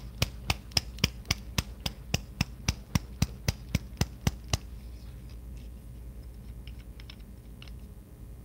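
A nail polish bottle being shaken: its mixing ball clicks against the glass in a steady run of sharp clicks, about four a second, that stops about four and a half seconds in. A few fainter clicks follow.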